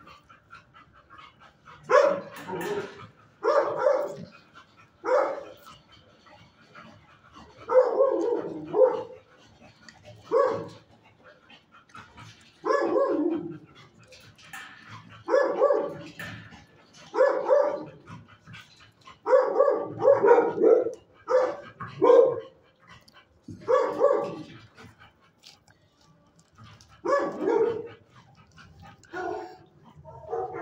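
A dog barking repeatedly: a bark or short run of barks every one to two seconds, with short pauses between.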